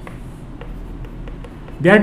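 Chalk writing on a chalkboard: a run of short, faint taps and scratches as words are written.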